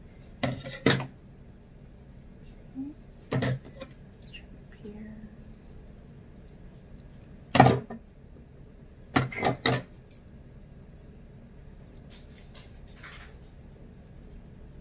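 Steel dressmaking scissors snipping through the cotton fabric of a face mask as its edges are trimmed: short crisp cuts, a pair about half a second in, single snips a few seconds apart, then three quick snips in a row and a few fainter ones after.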